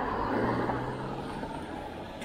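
A car overtaking close by: its tyre noise and a low engine hum swell during the first half-second, then fade as it pulls away.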